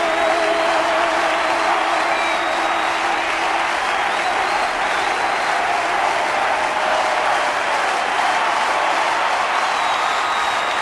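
Large theatre audience applauding steadily. A singer's held, wavering final note fades out a few seconds in.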